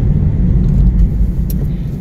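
Steady low rumble of a car driving, heard from inside the cabin, with a small click about a second and a half in.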